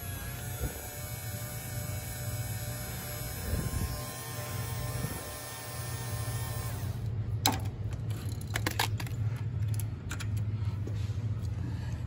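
Cordless electric flaring tool running steadily for about seven seconds as it forms a flare on the end of a copper refrigerant line, then stopping. A few sharp clicks and knocks follow as the tool is released from the pipe.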